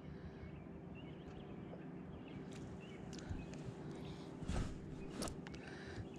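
Faint outdoor ambience in a small plastic kayak on calm water: a low steady hum with a few light knocks in the second half.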